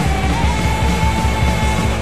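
Anarcho-punk band recording: distorted instruments and fast drums playing loud and dense, with a sustained high note that wobbles briefly and stops near the end.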